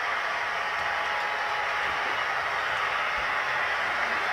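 Model diesel locomotive with a sound decoder running on the layout: a steady, even running noise without breaks.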